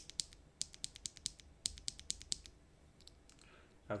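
A loose mechanical keyboard switch pressed repeatedly between the fingers: irregular runs of quick, light clicks as the stem bottoms out and springs back.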